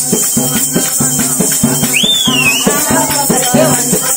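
Telangana Oggu Katha folk dance music: a fast, even drum rhythm under continuous metallic jingling. A high tone slides up and back down briefly about halfway through.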